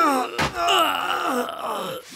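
A man's cartoon voice crying out in a drawn-out groan that falls in pitch. A sharp knock cuts in about half a second in, then a second wavering cry follows.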